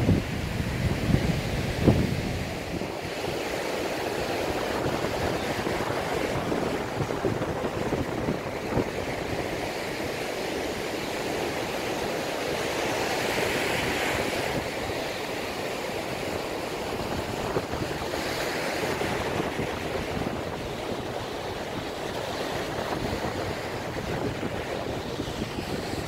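Sea surf washing steadily onto a sandy beach, with wind buffeting the microphone, most strongly in the first couple of seconds.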